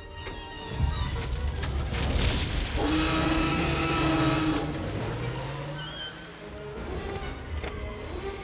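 Film Tyrannosaurus rex roar, one long loud roar lasting nearly two seconds about three seconds in. It sits over a heavy low rumble and orchestral music.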